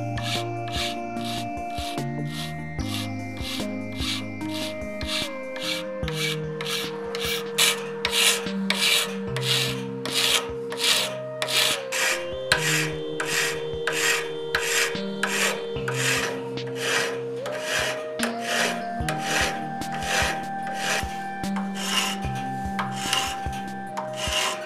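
Hand file rasping back and forth across 6061 aluminum knife scales and stainless steel liners clamped in a vise, about two strokes a second, the strokes growing stronger after about six seconds. The liners serve as the guide the scales are filed down to. Background music plays throughout.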